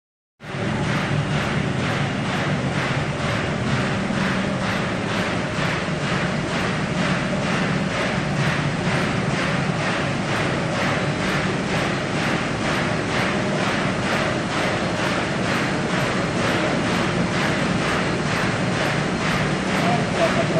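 Automatic industrial machine running at speed, its cam-driven arms and linkages clattering in a fast, even cycle of about two to three strokes a second over a constant mechanical hum.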